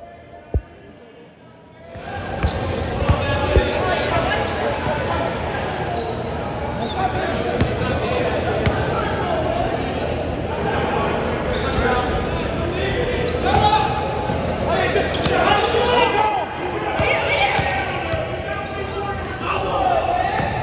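Pickup basketball game noise in a gym: a ball bouncing on the hardwood floor and many sharp knocks under indistinct shouting from the players, echoing in the large hall. The first two seconds are quieter, with one thud, before the game noise comes in abruptly.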